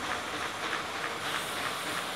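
Dosa batter sizzling on a hot wood-fired iron griddle: a steady hiss.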